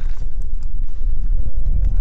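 Steady low rumble of wind buffeting the camera's microphone.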